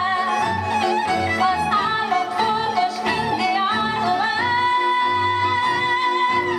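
Live folk band: a woman singing a melody over two fiddles and a double bass keeping a steady beat, with a long held note in the second half.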